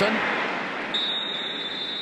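Stadium crowd noise, with a referee's whistle blown as one steady high tone from about a second in, lasting about a second, as the play is whistled dead after the catch.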